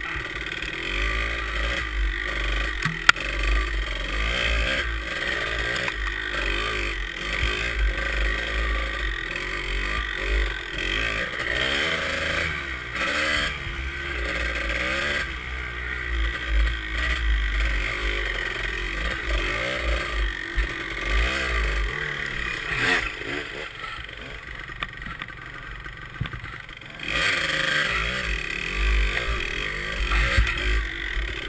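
Kawasaki KDX two-stroke dirt bike engine heard from on the bike, the throttle opening and easing off over and over as it rides a rough trail, with rattles from the chassis. The engine drops back for a few seconds near the end, then picks up again.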